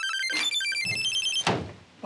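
Mobile phone ringtone playing a quick electronic melody of high, beeping notes, with a short knock about three-quarters of the way through.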